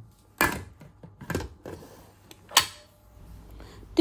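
Stainless-steel pressure cooker lid being set on the pot and closed: three sharp metal clicks and clunks, the loudest about two and a half seconds in.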